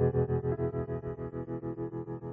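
Classical music in an electronic, synthesizer-processed arrangement: held chords pulsing about six times a second, slowly fading.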